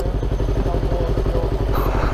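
Yamaha YZF-R25 parallel-twin engine idling steadily while the motorcycle stands at a stop.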